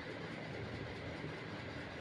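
Faint steady background noise, an even hiss with no distinct events.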